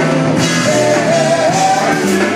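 Live funk band playing: electric bass, electric guitar, keyboards and drums. A wavering melody line runs over the band from about half a second in.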